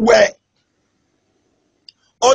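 A man's preaching voice ends a phrase right at the start, then the sound drops to silence, broken only by one faint click near the end.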